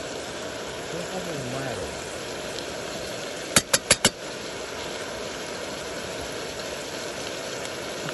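Portable gas burner running steadily under a pan of frying minced meat, with a continuous sizzle. About halfway through come four quick, sharp clicks in a row.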